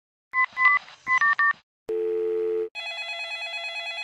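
Telephone sound effect: about five quick keypad dialing beeps, then a short steady tone, then a trilling telephone ring that starts just under three seconds in.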